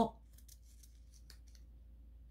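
Faint, scattered crinkles and ticks of a small folded paper slip being handled and unfolded between the fingers.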